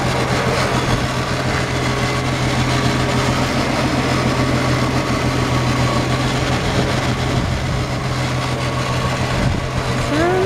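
A 1965 Ford Mustang's original inline-six engine idling steadily, heard from over the open engine bay.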